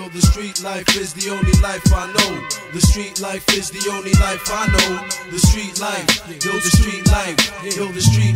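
Hip hop beat: a drum pattern of deep kicks and sharp snares, with pitched sampled sounds bending over it.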